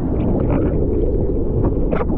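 Seawater rushing and splashing around a camera riding at the surface on a bodyboard, with wind buffeting the microphone: a loud, steady low rumble with a few short splashes.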